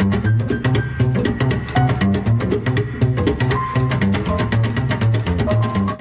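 Upright double bass played slap style: walking low plucked notes with a rapid, even train of percussive string clicks, and a higher melodic line above.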